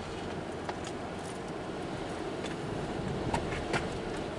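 Steady road and engine noise heard inside a car cabin while driving at about 35 to 40 mph and gently speeding up, with a few faint ticks scattered through it.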